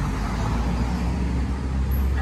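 Engine and road noise of an open-sided tour trolley bus rolling slowly, heard from on board: a steady low rumble with a haze of traffic noise.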